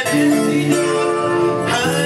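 A live band playing a song, guitars to the fore, with long held melody notes over the accompaniment.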